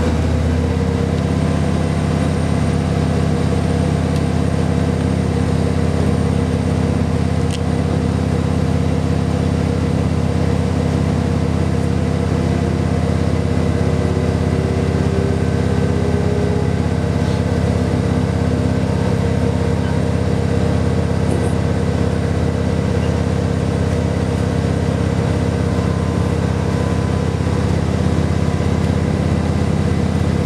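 A KiHa 40 series diesel railcar's engine running steadily under way, heard inside the passenger cabin as a constant low drone.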